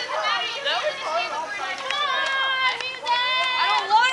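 Several people's voices talking and calling out over one another, with some high, drawn-out calls.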